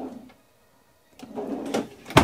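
A wooden cabinet drawer sliding shut on its runners, a short rolling slide in the second half.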